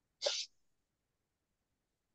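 A person sneezing once, a short burst.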